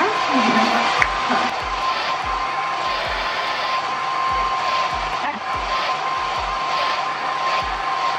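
Handheld hair dryer blowing steadily, its motor running with a constant high whine. It is drying lace-wig glue along the hairline until the glue turns tacky.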